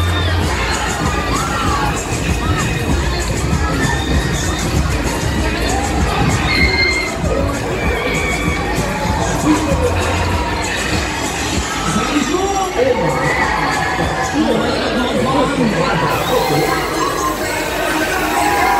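Riders on a spinning Huss Break Dance fairground ride screaming and shouting over crowd noise, with a low steady rumble underneath.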